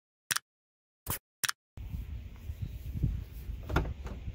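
Three brief clicks in dead silence, then steady wind noise on the microphone, with a sharp click near the end as a Dodge Durango's driver door is unlatched and pulled open.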